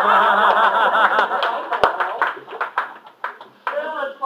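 Audience laughing together, then scattered clapping that breaks in about a second and a half in and thins out, with one sharp knock in the middle. A voice starts speaking again near the end.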